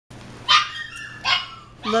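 Two short, high-pitched barks from a six-week-old Pocket Goldendoodle puppy, the first about half a second in and the second under a second later.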